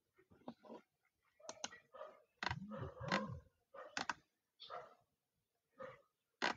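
Computer mouse clicking several times as answers are marked and the page is scrolled. About halfway through, a person gives two short low hums that rise and fall in pitch.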